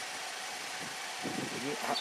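Steady background hiss with no distinct event, and a brief faint voice about a second and a half in.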